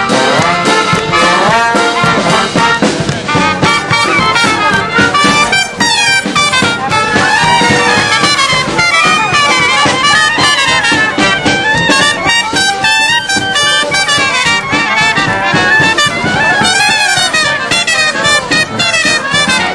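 Marching brass band playing a lively tune with a steady beat, trumpets and trombones carrying the melody.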